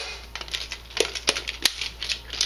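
Chinese-style 75-round AK drum magazine being loaded and handled: about half a dozen sharp, irregular clicks of cartridges and the drum's parts.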